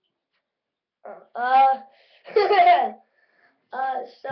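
Near silence for about a second, then a child's voice in short, loud spoken phrases, with the words not made out.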